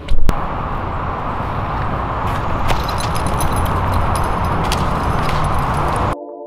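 A sharp click, then a steady low rushing noise, as of a vehicle on the move, with light scattered clicks and rattles over it.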